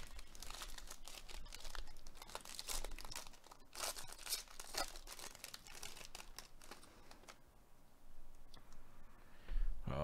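Foil wrapper of a 2022 Topps Series 1 jumbo baseball card pack being torn open and crinkled, a run of crackles that dies down about eight seconds in.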